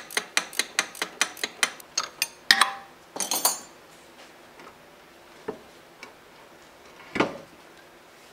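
Metal clicks and clinks as the cast-iron headstock of an Atlas Craftsman lathe is worked loose from the lathe bed. A quick, even run of sharp clicks is followed by two louder metallic clatters a few seconds in, then sparse knocks and one heavier knock near the end as the headstock comes off the bed.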